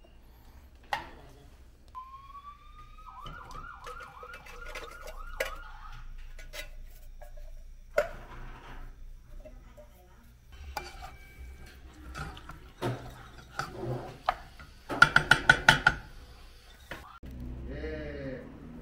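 Cooking sounds at a stovetop saucepan: scattered clinks and knocks of utensils against a metal pot, with a short whine that rises and then wavers about two seconds in. Near the end comes a fast run of about seven loud, ringing metallic clinks.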